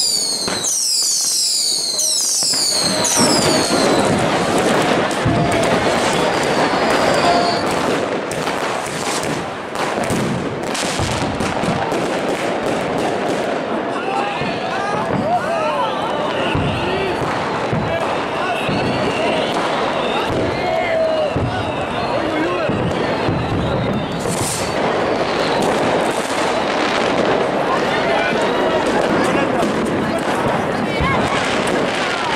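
Street fireworks and firecrackers going off all around: a dense, continuous run of bangs and crackles, with a series of high falling whistles in the first few seconds.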